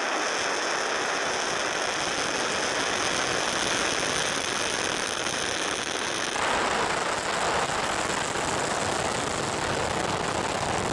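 Angara-1.2 rocket's first-stage RD-191 kerosene engine at liftoff: a steady, noisy rush of exhaust with little deep bass, shifting in tone about six seconds in.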